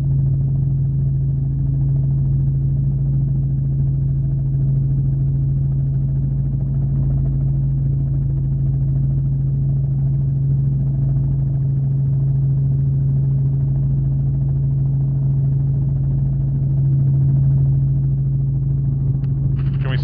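Helicopter in flight heard from the cabin: a steady, loud, unchanging drone with a strong low hum over a deeper rumble.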